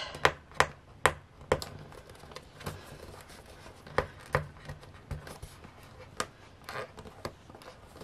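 Fingernails picking and scratching at the taped seal of a small cardboard box, giving sharp taps and clicks: several in quick succession in the first second and a half, then scattered ones.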